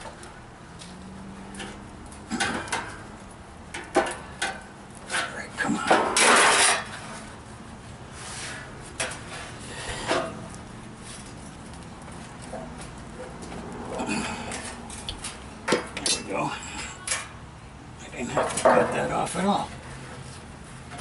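Sheet metal clinking and clanking as it is handled and bent by hand, with a longer scrape about six seconds in and a burst of clanks near the end.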